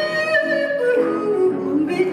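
Jazz singer's voice, live with grand piano: she holds a long note, then lets it slide down in pitch.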